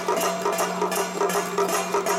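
Lion-dance accompaniment music in a quick steady beat, with bright metallic strokes of about four a second over ringing pitched tones. A steady low hum runs underneath.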